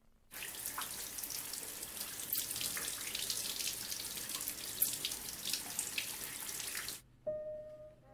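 Water spraying from a handheld shower head onto a person's head and hair, a dense steady hiss that cuts off suddenly about seven seconds in. A single held musical note sounds just after it stops.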